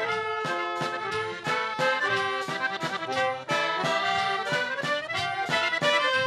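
Folk street band playing an instrumental refrain between sung verses: saxophones, trumpet and accordion-like reed melody over bass drums keeping a steady beat.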